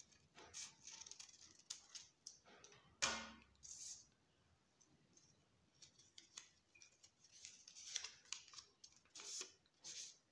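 Quiet snips of small scissors cutting through folded lined paper, a few short cuts with the loudest about three seconds in. Later comes a run of paper rustling and crinkling as the folded cut-out is handled and opened out.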